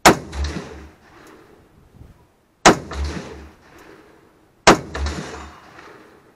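Three shots from an SKS semi-automatic rifle in 7.62×39mm, about two to three seconds apart, each sharp crack followed by an echo rolling away over about a second.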